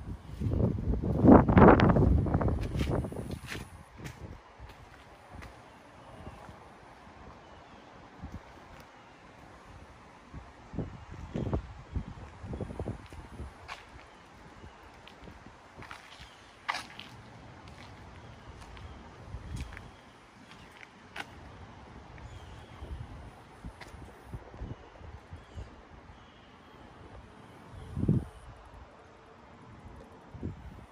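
Outdoor handheld recording: a loud rustling rush on the microphone for about two seconds near the start, then light scattered footsteps and taps, and one dull thump near the end.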